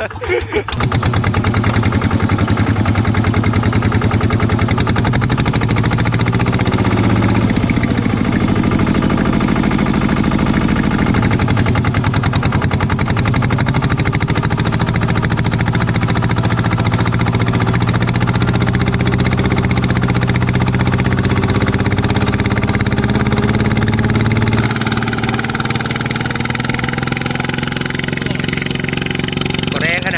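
Single-cylinder horizontal diesel engine of a Yanmar walking tractor running under load as it drives cage wheels through a flooded rice paddy, its speed rising and dipping now and then. About 25 seconds in, the sound changes abruptly and gets a little quieter.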